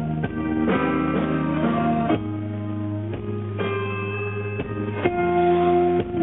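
Rock band playing live: electric guitar chords ringing over bass, changing every second or so, with no vocals.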